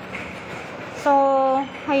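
A woman says a short word about a second in, over a steady background hum that fills the pause before it.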